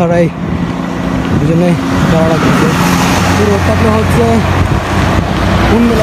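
A bus overtaking close by on the road, its tyre and engine noise building over the first few seconds, with a steady low engine drone as it goes past.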